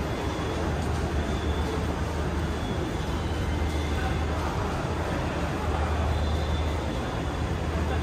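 Indoor shopping-mall ambience: a steady low hum with indistinct background voices echoing around a large atrium.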